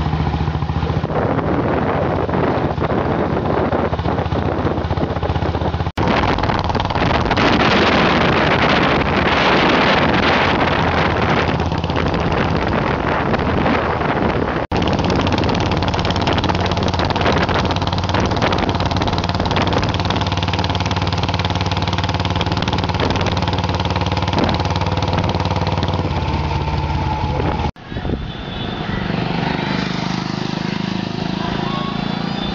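Royal Enfield motorcycle's single-cylinder engine running steadily on the move, with wind rushing on the microphone, heaviest about six to twelve seconds in. The sound breaks off abruptly for an instant a few times.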